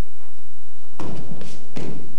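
Judo players' bodies thudding onto the mat as one rolls forward over the other into a stranglehold: a few dull thumps in the second half, after a quiet first second.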